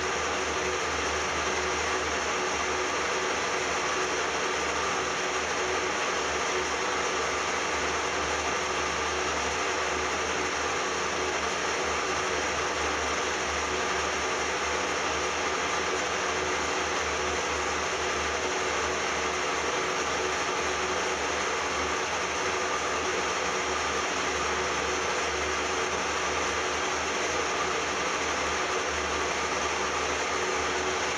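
Metal lathe running steadily while a straight knurling wheel rolls against a spinning cast aluminium bar, a steady mechanical whir with a faint whine that does not change.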